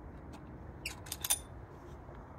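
A few light clicks and small scrapes of metal camera adapter parts being handled, a T-adapter being worked onto the T-ring on a DSLR, coming in a short cluster about a second in over a low, steady background.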